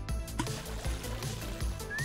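Background music, with water being poured from a glass beaker into a glass jar.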